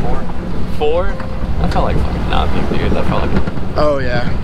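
Pickup truck driving, heard from its open bed: a loud, uneven low rumble of the truck and wind buffeting the microphone, with snatches of voices over it.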